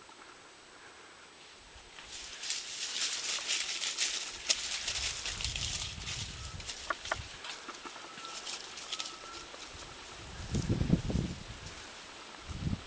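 Dry leaf litter and twigs crackling and rustling as a giant anteater walks out through the brush, starting about two seconds in and lasting several seconds. A low rumble on the microphone follows near the end.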